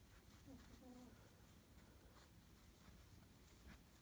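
Near silence: faint, soft rustles of paracord strands being handled and woven by hand, with a faint short pitched sound in the first second.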